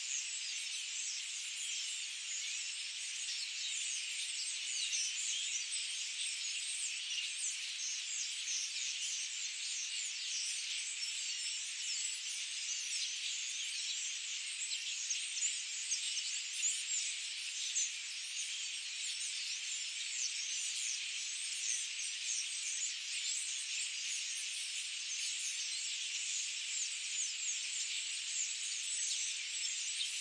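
Steady, dense high-pitched chirring of an insect chorus, made of countless rapid chirps with no low sound beneath it.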